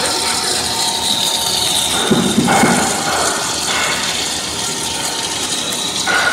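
Corn-puff twist snack extruder running steadily: a continuous mechanical whir and fine rattle with a few steady tones, with a brief louder low rumble about two seconds in.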